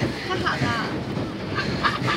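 Young women laughing and talking in short bursts, over a steady background hiss.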